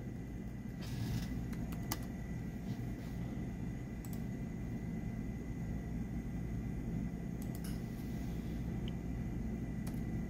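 A few scattered computer keyboard and mouse clicks over a steady low hum with a faint high whine.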